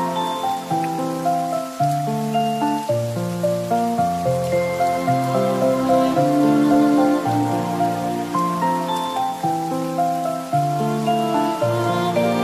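Soft, slow instrumental music of sustained notes and chords mixed with the steady patter of rain.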